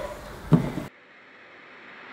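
A single dull thump about half a second in, followed by faint room tone.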